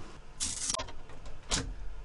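Handling sounds at a 3D printer's enclosure as its finished print is reached for: a short scraping rush about half a second in, then a couple of sharp knocks.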